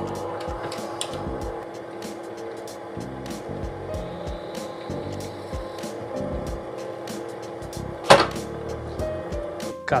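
A drill bit cutting through an epoxy-coated paper and aluminium panel, with scattered clicks and low thuds and one louder sharp crack about eight seconds in, under steady background music.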